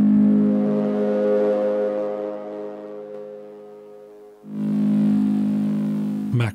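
Arturia MiniFreak synthesizer playing a sustained pad chord that slowly fades, then a second held chord swelling in about four and a half seconds in.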